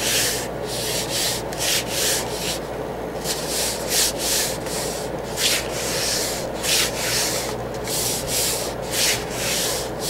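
Hands rubbing and smoothing over folded patterned paper to press a glued seam down: a series of dry, hissing rubbing strokes, about one or two a second.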